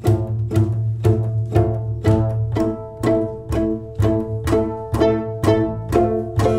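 Acoustic string trio of violin, acoustic guitar and double bass playing a repetitive jazz piece. Plucked and strummed chords fall about twice a second over a plucked bass line while the violin is bowed.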